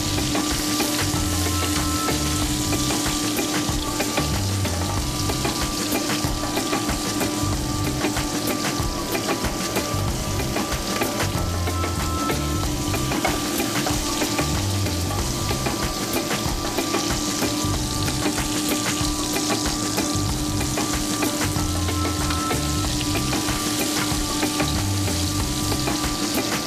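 Whole seasoned prawns frying in hot oil in a pan over a gas flame: a steady, dense sizzle and crackle over a low steady hum.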